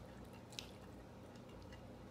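Faint, soft squishing of diced tomatoes being scraped with a spatula from a small bowl into a glass mixing bowl of rice, with one small tick about half a second in.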